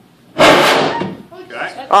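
Isopropyl alcohol vapour igniting inside a large plastic water-cooler jug: a sudden whoosh about half a second in, fading over about a second. A weak burn, a "crappy one".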